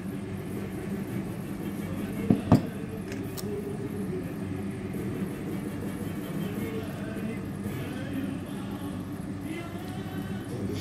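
Indistinct background voices murmuring, with two sharp knocks in quick succession a little over two seconds in.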